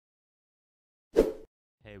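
Silence, then one short, loud pop about a second in: an edited-in sound effect from an intro.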